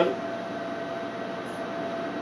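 Steady machine hum with a faint steady whine: the running equipment in a small room, such as the robot system's fans or the air conditioning.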